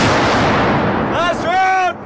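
120mm mortar firing: the blast's rumble and echo fade over about the first second, then a soldier gives a drawn-out shout.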